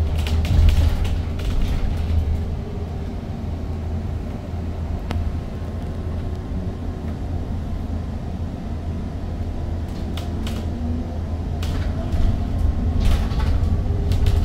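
Cabin sound of a 2021 Edison Motors Smart 093 electric city bus on the move: a steady low rumble of road and drive noise with a faint steady hum over it. Clusters of short rattles and clicks from the bus interior come near the start and again in the last few seconds.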